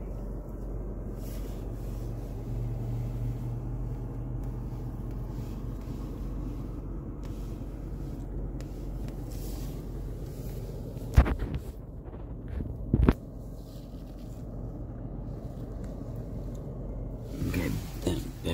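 Steady low rumble of a car's cabin while driving slowly, engine and road noise heard from inside. Two sharp knocks come about two seconds apart past the middle.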